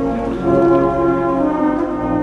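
Brass band playing a slow funeral march in long, held chords, swelling slightly about half a second in.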